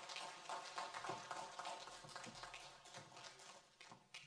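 A Bible and papers being picked up and handled close to a pulpit microphone: irregular soft taps, knocks and rustles that fade away near the end.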